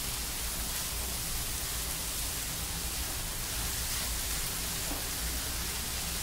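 Diced bottle gourd frying in oil in a nonstick pan: a steady, even sizzle as the pieces are stirred with a spatula.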